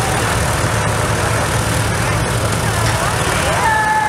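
Engines of a Scammell heavy truck and Fordson Major tractors running under load, straining against each other in a tug-of-war pull, a steady low rumble.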